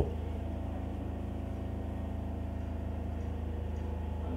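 A steady low motor hum, running evenly with a fast regular pulse and no change in pitch or level.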